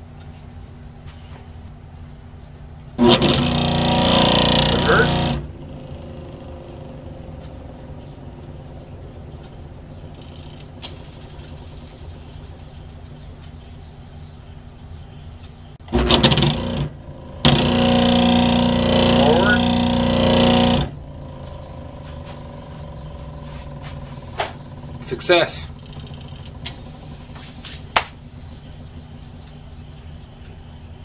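Rewired Century Electric lathe motor switched on for a test run twice: a run of about two seconds, then a longer one of about four seconds running forward. Each run has a steady hum and starts and cuts off sharply.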